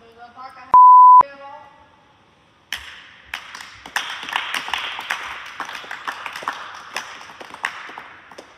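A censor bleep, one loud steady high beep about half a second long, cuts over a short spoken line about a second in. From nearly three seconds in, a group of people clap, a dense patter of many hand claps.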